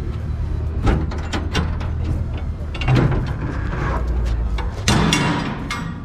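Steel shipping-container doors being unlatched and opened: metal clanks and knocks from the locking bars and handles, with loud clanks about three seconds in and near five seconds as the doors swing free. A steady low rumble runs underneath and drops away near five seconds.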